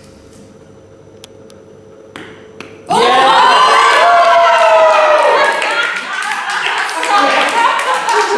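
A few faint clicks of balls on the play mat. Then, about three seconds in, a small group bursts into loud cheering and excited shouts, followed by clapping.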